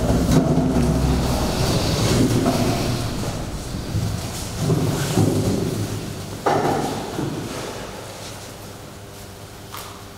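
Sheets of paper being handled and shuffled on a wooden table, with irregular rustles and knocks and one sharper thud about six and a half seconds in; the handling noise fades toward the end.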